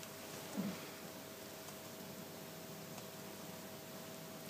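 Quiet room tone with a faint steady hum, and one soft brief sound about half a second in.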